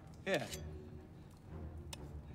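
A man says "Here", then a quiet film soundtrack bed: a low steady rumble with faint music underneath, and a single click near the end.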